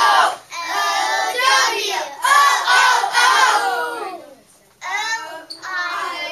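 A class of young children chanting phonics sounds together in rhythmic unison. The chant breaks off briefly a little after four seconds in, then starts again.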